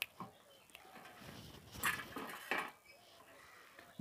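Faint clinks and scrapes of a knife and watermelon pieces on stainless steel plates, a few scattered knocks, the loudest about two seconds in and again half a second later.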